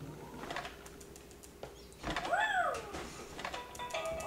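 A single short coo that rises then falls in pitch, about halfway through. Near the end, the Fisher-Price snail toy starts playing its tune, set off by a slight push.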